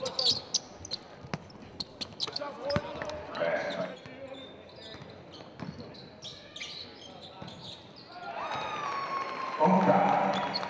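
Basketball dribbled on a hardwood court: a run of sharp bounces in the first few seconds, then scattered bounces, with players' and spectators' voices calling out in the hall.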